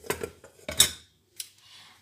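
A plate being picked up and set about, knocking and clattering against other dishes: a couple of sharp clinks, the second and loudest under a second in, then a faint tap.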